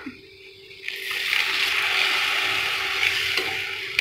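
Ground tomato paste poured into hot oil and fried onions in a kadai, sizzling loudly from about a second in and stirred with a slotted ladle.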